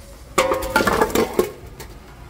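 Metallic clatter with a brief ringing, like stamped steel being knocked, as the automatic transmission's oil pan is handled over the metal drain basin, for about a second.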